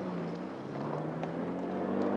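A car engine running with a low, steady hum that shifts in pitch a couple of times, heard on an old black-and-white film's soundtrack.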